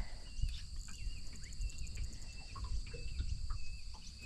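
A steady, high-pitched insect chorus drones on, with short bird chirps repeating every second or so, over a low background rumble.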